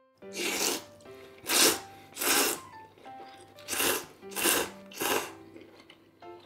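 A man slurping thick tsukemen noodles dipped in niboshi (dried sardine) broth: six loud slurps in two runs of three. Soft background music plays under them.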